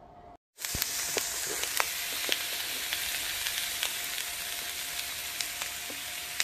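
Diced squash and onions sautéing in olive oil in a wok: a steady frying sizzle with frequent sharp pops and crackles. It starts about half a second in, after a brief gap.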